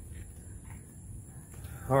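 Steady low background hum with no distinct events, and a man's voice starting near the end.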